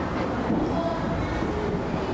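Steady low rumble of background noise, with faint short tones scattered through it.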